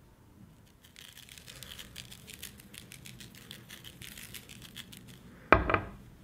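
Faint, rapid crackling and ticking of a paper sheet strewn with iron filings being handled, with a short louder sound about five and a half seconds in.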